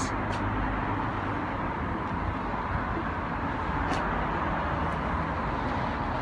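Steady, even vehicle rumble with no distinct pitch, with two faint clicks, one just after the start and one about four seconds in.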